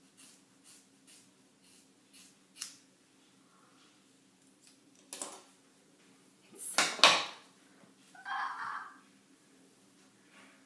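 Hair-cutting scissors snipping through a thick bundle of long wet hair, a steady run of about two snips a second for the first couple of seconds. Later come a few louder sudden noises, the loudest about seven seconds in.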